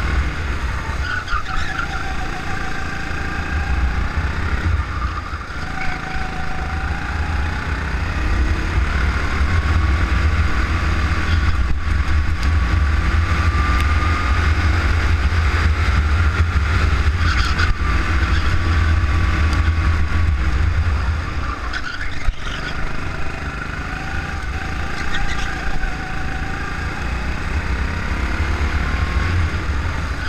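Go-kart engine heard from on board, its pitch climbing as the kart accelerates out of corners and dropping as it slows into them, under a heavy low rumble.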